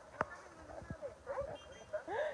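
Faint background voices talking, with one sharp tap about a quarter second in.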